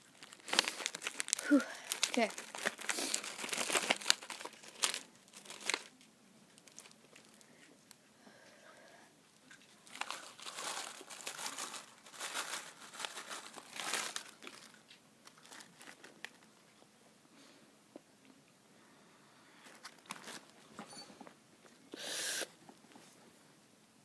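Plastic candy bag of Sour Skittles crinkling and crackling as it is handled, in two stretches: the first during the opening seconds, the second a little before and after the middle as the bag is tipped up to pour the candy into the mouth.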